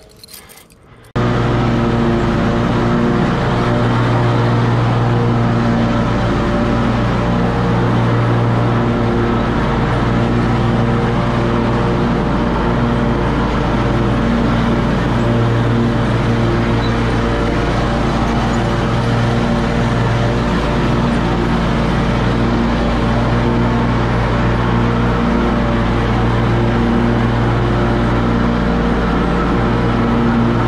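An engine running steadily at constant speed, loud and unbroken, cutting in suddenly about a second in after a moment of quiet handling clicks.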